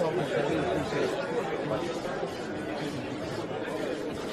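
Several people talking at once: overlapping, indistinct conversational chatter.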